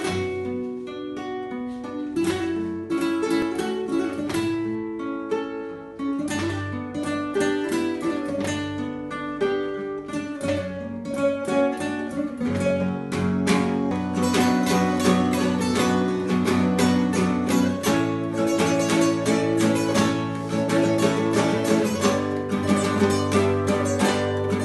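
Slow, plaintive instrumental guitar music: single plucked notes, growing fuller and louder about halfway through, with held low notes underneath.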